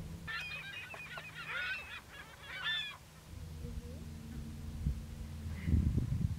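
A flock of water birds calling, a dense run of short overlapping calls lasting about two and a half seconds, then dying away. Near the end come a few low crunching footsteps on the dry lakebed.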